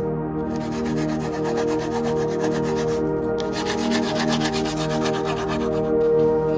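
Rapid back-and-forth hand strokes of an abrasive tool rubbing a hardwood slingshot handle, in two runs with a brief pause about halfway through. Soft ambient music with steady held tones plays underneath.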